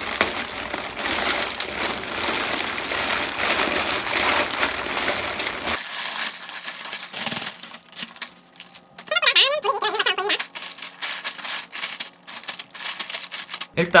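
A plastic mailer bag crinkling steadily as it is opened and handled. After about six seconds this gives way to scattered rustles and clicks of small plastic bags full of toy bricks being shaken out and spread on a table.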